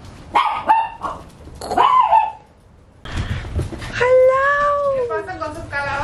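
Small chihuahua-type dog barking twice in short, high yaps, with a woman's voice talking to the dogs near the end.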